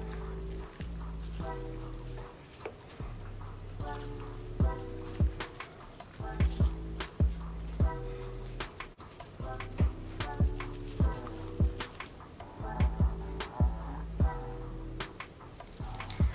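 Background music with sustained chords, over which a wooden spoon stirring the liquid in a crock pot knocks and clicks sharply and irregularly against the pot.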